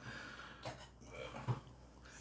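Faint handling of a steel ring-pull food tin on a worktop, with a couple of small clicks about a third of the way in and past halfway.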